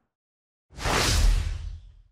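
A whoosh sound effect marking a transition to a new section title card. It swells in just under a second in and dies away over about a second, with a deep low rumble under the hiss.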